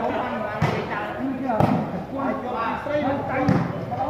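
A volleyball struck by players' hands during a rally: three sharp hits, the first two about a second apart and the third about two seconds later.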